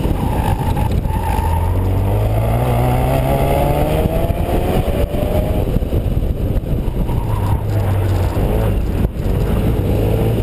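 A 2016 Ford Focus RS's turbocharged 2.3-litre four-cylinder engine, driven hard through an autocross course. Its pitch climbs over a few seconds as it pulls through a gear, then settles lower, with a brief dip near the end. Wind rushes over the roof-mounted microphone.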